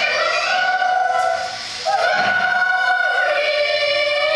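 Group of children singing together, holding long steady notes. The sound dips briefly about a second and a half in, then a new note starts.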